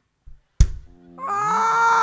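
A single sharp drum hit about half a second in, then a long high wailing note that slides up into place and holds steady for more than a second, part of the music and vocal effects of a live nang talung shadow-puppet show.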